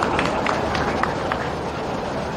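Steady crowd noise from a large audience, with a few scattered sharp claps in the first second or so.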